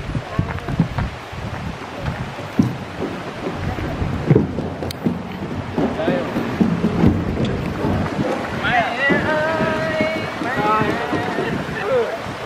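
Steady rush of a forest creek with wind buffeting the microphone and scattered footstep knocks. A high-pitched voice comes in from about eight and a half seconds.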